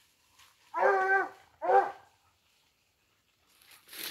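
A hunting dog giving two short baying calls in quick succession, about a second in.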